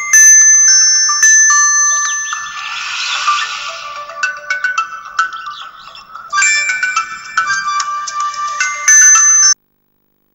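Mobile phone ringing with a melodic electronic ringtone, several high notes sounding together. It cuts off suddenly near the end as the call is answered.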